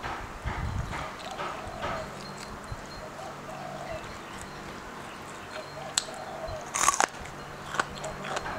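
Close-miked eating sounds: chewing and small clicks from handling fresh vegetables and chilli dip, with one louder short burst about seven seconds in.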